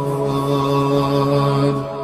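Islamic devotional music: one long chanted note held at a steady pitch.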